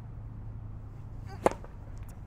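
A tennis racket striking the ball on a serve: one sharp pop about one and a half seconds in, over a steady low hum.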